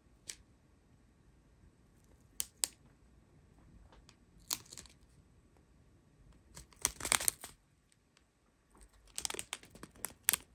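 Clear plastic bags of square diamond-painting drills crinkling as they are handled, in short scattered bursts, the loudest around seven seconds in and a busy run near the end.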